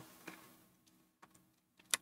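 A few faint, brief clicks from working a computer, about three across two seconds, over a faint steady hum.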